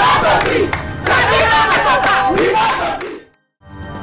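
A group of women shouting and chanting together, many voices overlapping. It cuts off suddenly about three seconds in.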